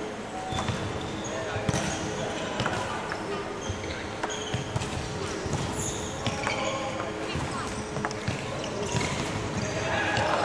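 Badminton play on a wooden court: repeated sharp racket hits on the shuttlecock, short high shoe squeaks and footfalls, with voices in the hall.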